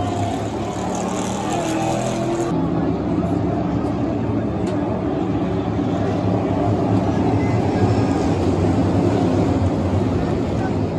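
NASCAR Cup Series stock cars' V8 engines running past on the track, several engines at once. The sound grows louder toward the end, with crowd chatter mixed in.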